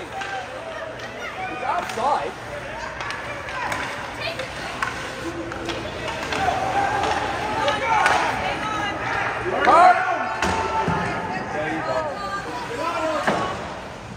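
Ice hockey rink during play: voices calling and shouting across the rink, with sharp knocks of sticks and puck against the ice and boards, the loudest a little before ten seconds in.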